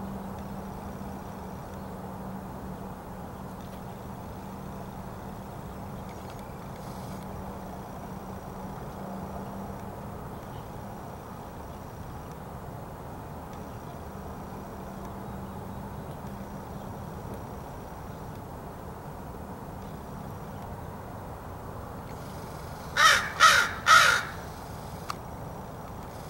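A crow cawing three times in quick succession near the end, over steady background noise with a low hum.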